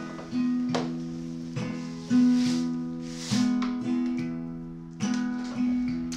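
Acoustic guitar strumming chords, each struck chord ringing out and fading before the next, in a slow, unhurried pattern.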